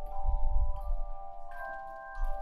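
A student ensemble playing a classical piece on chimes: several sustained, ringing notes overlapping, with new notes entering over the ringing ones, and low thuds underneath.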